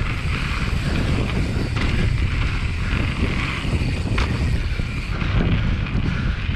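Wind buffeting the microphone of a bike-mounted action camera as a mountain bike rolls fast down a dirt trail, with a steady rumble from the tyres and frame and a couple of short sharp knocks from the bike.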